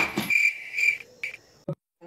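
A sharp smack right at the start, followed by a few short, high, chirping tones repeating at an even pace, ending about a second and a half in.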